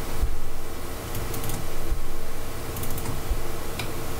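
Scattered clicks and taps of a computer mouse and keyboard, with a few dull thumps on the desk, over a low steady hum.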